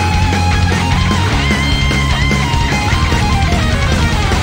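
Heavy metal band playing live: electric guitars, bass and drums, with a lead line of held, bending high notes over the dense backing.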